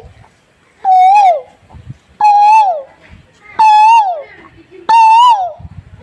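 A man imitating the Asian koel's call with his voice: four loud calls about 1.3 s apart, each rising and then dropping in pitch, and each pitched a little higher than the last.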